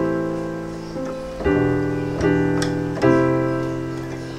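Piano playing four chords, each let ring and fading before the next, the first at the start and the others about one and a half, two and a quarter and three seconds in. It is the song's accompaniment, arranged in the key of C.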